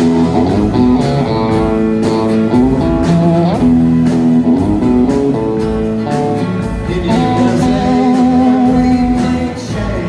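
Live rock band playing: electric guitar and a drum kit keeping a steady beat under a man singing lead into a handheld mic, with a long wavering held note in the second half.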